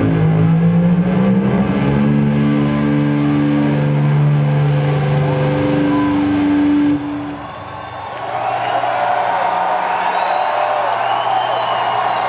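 Distorted electric guitar played solo through a concert PA. Long sustained low notes ring out and cut off suddenly about seven seconds in. After a short dip, higher notes are bent up and down in repeated arcs.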